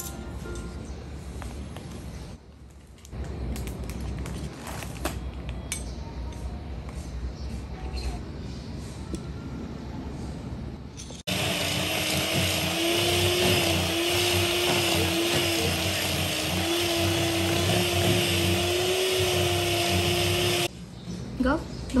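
Electric hand mixer starts suddenly about halfway through and runs steadily with a slightly wavering motor hum, its beaters working cream cheese and sugar in a stainless steel bowl, then stops shortly before the end. Before it, soft clinks of utensils.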